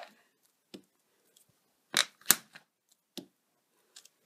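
Small wood-mounted rubber stamp knocked down onto cardstock on a craft mat: a few separate sharp taps, the loudest two close together about two seconds in.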